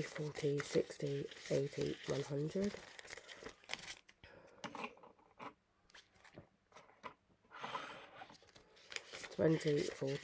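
Banknotes being handled and counted by hand: crisp crinkling and flicking rustles of the notes. A voice murmurs quickly in the first few seconds and again near the end.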